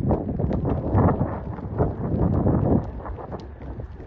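Wind rumbling on the microphone, loudest over the first three seconds, over the hoofbeats of a Connemara pony cantering on grass.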